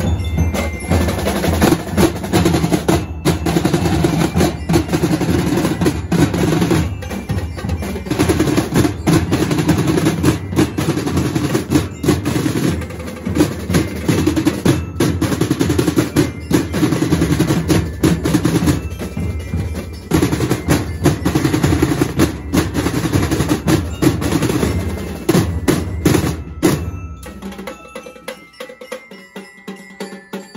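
Marching drumline playing a fast street cadence on snare drums and bass drums, with a few short breaks in the rhythm. The playing stops about three seconds before the end, leaving only quieter background sound.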